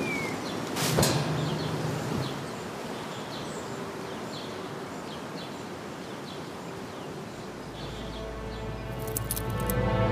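Outdoor background with faint, scattered bird chirps and a single knock about a second in. Music fades in and grows over the last couple of seconds, with a few sharp clicks just before it.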